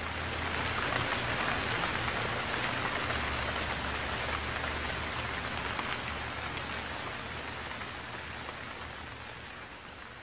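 Opening of a music-video preview: a steady hiss like rain over a low hum, with no instruments or voice yet. It is loudest early on and slowly fades away.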